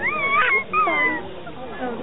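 Two high-pitched squeals from an infant in the first second or so, the second one falling away in pitch.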